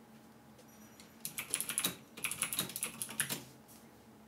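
Typing on a computer keyboard: a quick run of keystrokes beginning about a second in, with a short pause near the middle, stopping shortly before the end.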